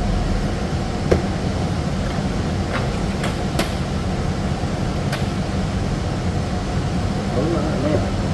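Steady background noise of a shop with a low hum, broken by a few light, sharp clicks as a plastic handheld shower head is handled. A voice begins near the end.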